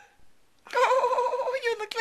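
A high-pitched voice starts about two-thirds of a second in and is held for about a second on one wavering pitch.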